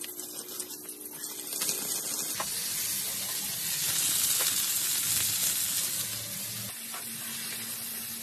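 Chicken cocktail sausages sizzling in hot oil in a frying pan; the sizzle grows much louder about two and a half seconds in and stays strong.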